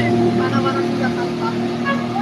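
Motorboat engine running at a steady pitch, a continuous drone, with faint voices mixed in.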